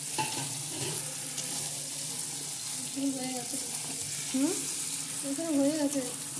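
Mutton kosha frying in a metal kadai, sizzling steadily as it is stirred and turned with metal utensils.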